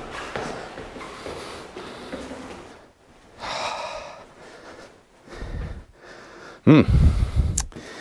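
A man breathing heavily from exertion, with a long breath out about three seconds in and a low thump a little later, then a short voiced "hmm" near the end.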